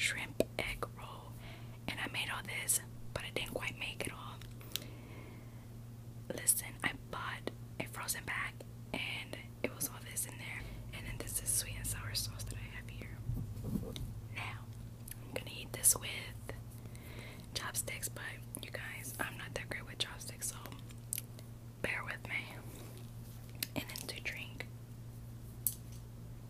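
A woman whispering close to the microphone, broken by many small sharp clicks and taps, over a steady low hum.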